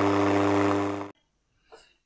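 Steady electronic buzz with hiss from a radio receiver tuned to AM, cutting off about a second in.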